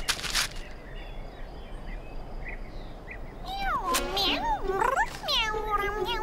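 A brief rustle of wrapping paper at the start, then a cat meowing several times in the second half, in short calls that rise and fall in pitch.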